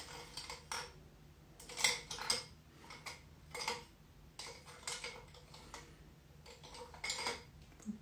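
Scattered light clicks and clinks, a sharp one roughly every half second to second, of small hard makeup containers and tools being picked up, handled and set down.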